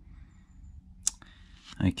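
A single short, sharp click about a second in, over a faint low hum.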